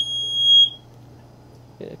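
Watchdog water alarm going off, a single high, loud electronic tone like a smoke detector, as its two bottom sensors touch water; it cuts off after well under a second.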